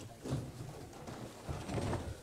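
Room noise of people moving about as a talk breaks up: scattered faint knocks and shuffles, with no one speaking into the microphone.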